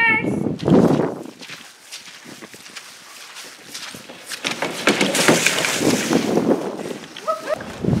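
Small plastic ride-on car rolling down a plastic toy roller coaster track, a rattling rumble that starts about halfway through and grows louder for a couple of seconds.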